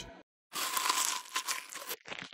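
Orange peel being torn, a crinkly tearing rush that starts about half a second in and lasts about a second and a half.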